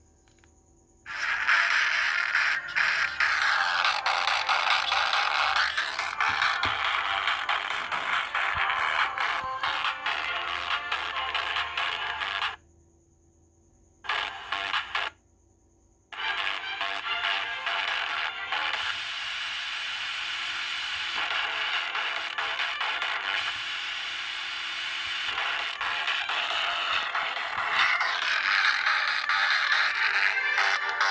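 Pop remix music picked up from a homemade two-transistor FM transmitter and played through a feature phone's FM radio speaker, thin with almost no bass. It starts about a second in, cuts out for a few seconds near the middle with a brief return in between, then plays on as the radio is retuned to the transmitter's frequency.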